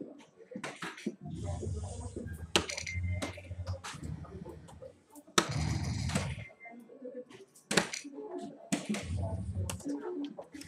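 Soft-tip darts striking an electronic dartboard: a series of sharp clicks, with low humming stretches of about a second between some hits and people talking in the background.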